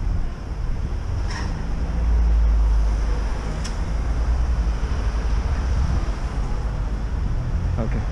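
Low rumble of wind on the microphone over street traffic, swelling for a second or so about two seconds in.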